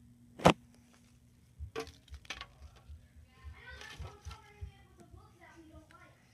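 A single sharp knock about half a second in, then a couple of lighter clicks, followed by faint talking in the background.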